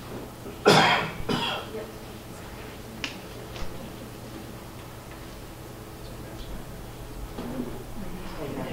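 A person coughing twice in quick succession about a second in, then a couple of faint clicks and a little low murmuring near the end, over a steady low hum.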